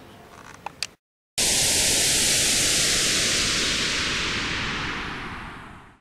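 A few faint clicks, a moment of dead silence, then a sudden loud hiss of static, like white noise, that holds steady and fades out over the last second or so.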